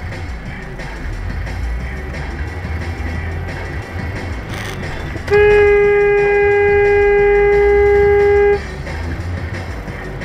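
A car horn held in one steady tone for about three seconds, starting about five seconds in and cutting off abruptly. It is a warning blast at an SUV cutting across the car's path in a near miss. Under it runs the car's engine and road rumble, with music playing.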